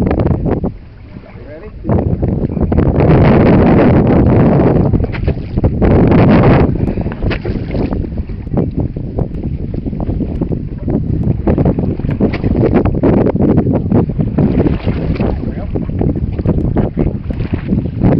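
Wind buffeting the microphone in loud gusts, the strongest a few seconds in, then choppier noise of wind and water for the rest.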